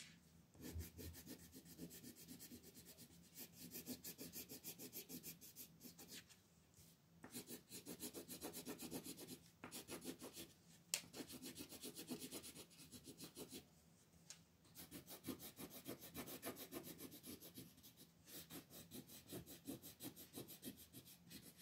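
Colored pencil shading on paper in rapid back-and-forth strokes, a faint scratchy rub. The strokes come in runs of a few seconds broken by short pauses.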